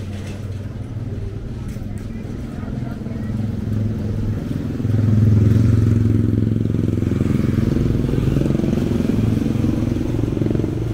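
Motorcycle engine of an approaching motorcycle tricycle running. It gets louder about halfway through, and its note rises and falls.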